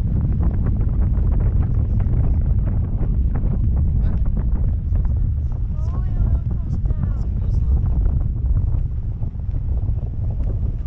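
Wind buffeting the microphone of a camera carried aloft under a parasail: a loud, steady low rumble.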